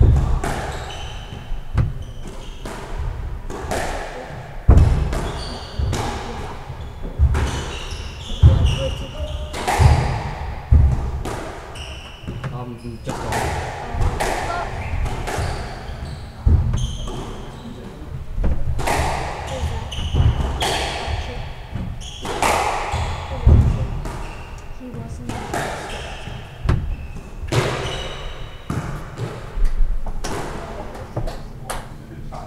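Squash being played: the ball struck by rackets and cracking off the court walls about once every one to two seconds, echoing in the court, with shoes squeaking on the wooden floor between the hits.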